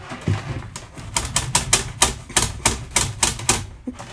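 A rapid, even series of sharp clicks, about five a second, starting about a second in and stopping just before the end.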